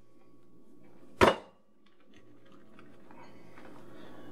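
A single sharp knock about a second in, then faint small taps and rustles as sliced mushrooms are laid on rolled-out dough on a wooden board, over a low steady hum.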